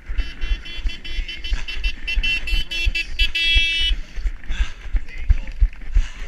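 A runner's footfalls thudding in a steady rhythm, jolting a body-worn camera, about two to three strides a second. Over them, for the first four seconds, a high pitched sound pulses rapidly and then stops.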